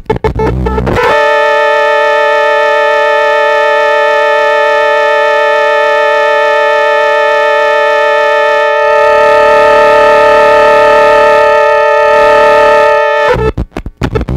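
Circuit-bent Yamaha PSS-9 PortaSound keyboard crashing from its voltage-starve pot. After a glitchy burst it locks into a steady drone of several held tones about a second in. A noisy hiss joins the drone about two-thirds of the way through, and the drone cuts off suddenly near the end, giving way to choppy rhythmic sound.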